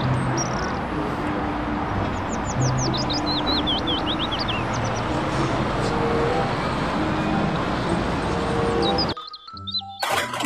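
Street traffic noise as a London electric single-deck bus drives past, with a bird giving a quick run of falling chirps about three seconds in. The sound cuts off abruptly about a second before the end.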